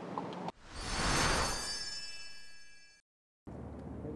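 Broadcast transition sound effect: a sudden whoosh that swells and fades under a bright, shimmering ringing chord, cut off abruptly about three seconds in, followed by a brief dead silence.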